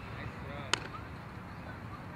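A softball smacking once into a leather fielder's glove about three-quarters of a second in: a thrown ball being caught.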